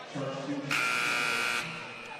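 Basketball arena horn sounding once, a steady buzz lasting about a second, with faint voices underneath.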